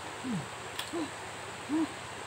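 Three short, low hooting calls about three-quarters of a second apart, the first falling in pitch and the next two arching up and down, the last the loudest, over the steady rush of river water.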